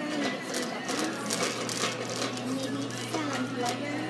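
Indistinct voices with a steady low hum and scattered short clicks.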